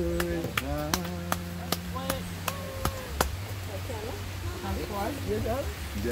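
A person singing holds one long note for about two and a half seconds, over a steady low hum, with sharp clicks keeping a beat about twice a second. Softer voices follow after about three and a half seconds.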